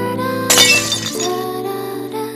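Background music with steady sustained notes, overlaid about half a second in by a glass-shattering sound effect that lasts about half a second, used as an editing transition between shots.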